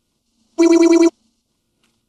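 A single short burst of a telephone-like electronic ring, rapidly pulsing and lasting about half a second, starting about half a second in.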